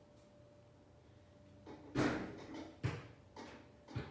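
A few sudden knocks and thumps, the first and loudest about halfway through, with sharper ones a second later and at the end.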